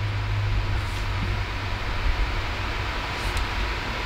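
Steady whirring hiss with a low hum, the sound of computer fans running while the GPU path-traces a Cycles render.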